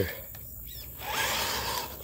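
Electric motor and geared drivetrain of a Redcat Gen8 V2 RC crawler running on 3S, a steady whirring that comes in about a second in as the truck drives off towing its trailer.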